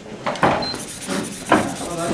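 Robodyssey Mouse robot's drive motors starting to whine, about half a second in, as the robot begins to move, just after a short high tone.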